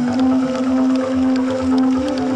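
New wave band playing live, taped from the audience: long held notes sliding slightly in pitch over a steady pulsing beat, with light cymbal ticks.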